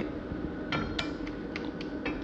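A few light clicks and clinks of glass syrup bottles with pump tops knocking together as they are handled, three short taps spread over the two seconds.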